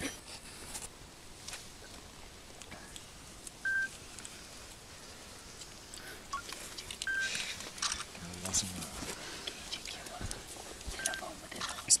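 Three short electronic beeps at one pitch, about three and a half seconds apart, over faint rustling and handling noise.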